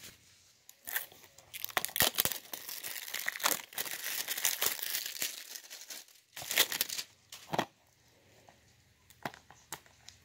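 Plastic shrink wrap on a DVD case being picked at and torn open, a crinkling, crackling sound broken by sharp clicks, which mostly dies away after about seven and a half seconds.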